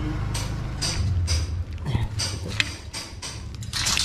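Irregular metallic knocks and clinks of steel reinforcing bars being handled, over a low steady hum.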